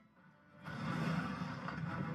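Movie sound effect of a flying armored suit's jet thrusters: a steady rushing rumble that cuts in suddenly about two-thirds of a second in, after near silence.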